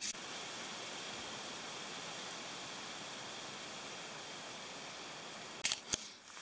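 Steady, even hiss of outdoor ambient noise with no distinct events, followed by a couple of short clicks near the end.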